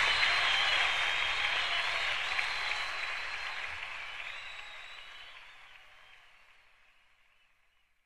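Audience applause at the end of a live rock recording, fading out steadily to silence.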